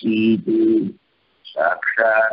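A man's voice speaking in long, drawn-out held tones, a short pause about a second in, then speech again.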